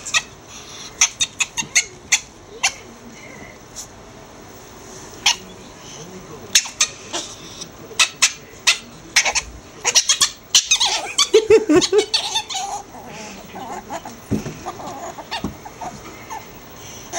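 Ferrets playing in a plastic laundry hamper: scattered short clucking dooks and scuffles against the clothes and hamper walls, busiest a little past the middle. A person laughs near the end.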